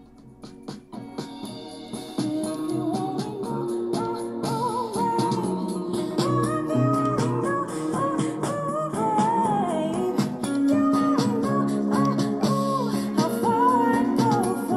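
A soul-pop song with a woman singing, played through small Logitech Z150 2.0 desktop speakers and heard in the room. It starts quiet and gets clearly louder about two seconds in, and a little louder again later.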